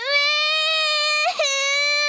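Cartoon toddler piglet crying: a long wail held at one steady pitch, broken briefly about a second and a half in, then taken up again.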